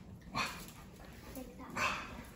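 Puppy giving two short barks about a second and a half apart.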